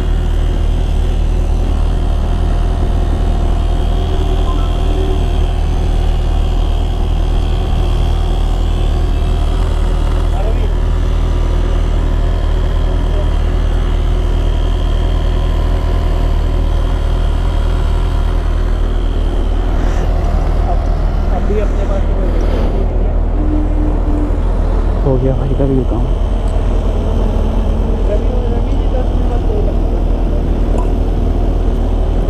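Portable electric tyre inflator's small compressor running steadily, pumping air into a scooter's tubeless tyre after a puncture plug repair.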